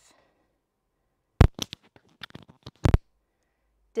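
Sharp clicks and crackles from a faulty microphone connection as it is handled, clustered between about one and a half and three seconds in, with the loudest clicks at the start and end of the cluster.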